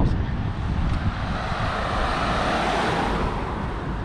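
A motor vehicle passes on the road, its noise swelling to a peak about two and a half seconds in and then fading, over a steady low rumble.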